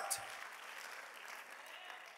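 Quiet applause from a large congregation, slowly fading away.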